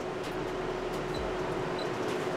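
Steady background noise: an even hiss with a faint constant hum and no distinct event.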